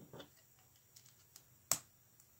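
LEGO pieces being handled and pressed onto a round plate: a soft rustle, a few faint ticks, then one sharp plastic click near the end as a piece snaps into place.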